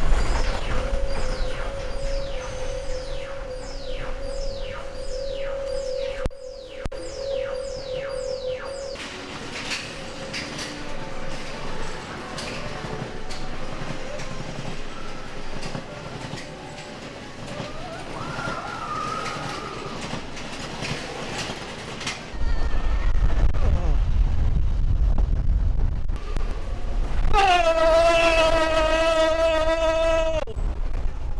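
Space Mountain roller coaster: for the first nine seconds the lift tunnel's electronic effects play, a steady hum with falling sweeps about twice a second. From about two-thirds of the way in, the coaster car rumbles loudly along the track in the dark. Near the end a held, wavering high tone sounds over the rumble.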